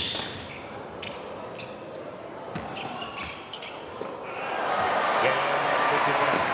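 Tennis balls struck by rackets in a rally: sharp knocks, a loud one at the start and several more over the next few seconds. From about four seconds in, a crowd in an indoor arena rises into applause and cheering for the point, growing louder.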